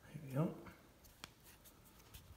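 A short murmur of voice near the start, then one sharp click a little past halfway and a few faint ticks: the diopter adjustment knob on Zeiss Victory SF 10x42 binoculars being turned through its detents.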